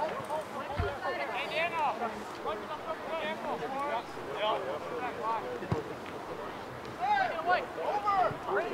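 Distant shouts and calls from players and spectators across an open soccer field, several voices overlapping and rising and falling, with no close voice.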